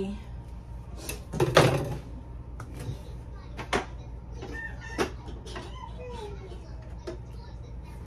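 Dishes and utensils clattering in a dish drying rack as a kitchen knife is pulled out: one loud rattle about one and a half seconds in, then a few sharp clicks, over a low steady hum.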